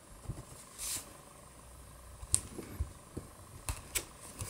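Faint taps and light clicks of a clear acrylic stamp block being dabbed on an ink pad and pressed onto cardstock.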